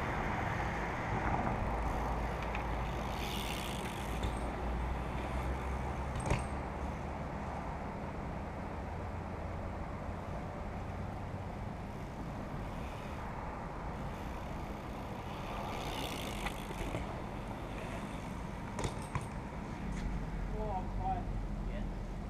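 Steady low rumble of outdoor noise, like road traffic, with a few sharp clicks and knocks from BMX bikes riding the concrete ramps. The clearest knock comes about six seconds in.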